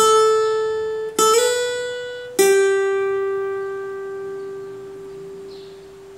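Acoustic guitar playing single picked notes: a note on the first string at the fifth fret, a second picked note that slides up to the seventh fret, then a lower note that rings out and slowly fades.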